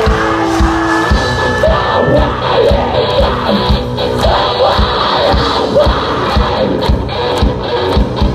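Symphonic deathcore band playing live, with regular drum hits under a held orchestral backing chord that stops about a second in, followed by shouted voices over the music.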